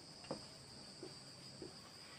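Faint felt-tip marker strokes on a whiteboard, three soft scrapes a little over half a second apart, over a steady high-pitched background trill.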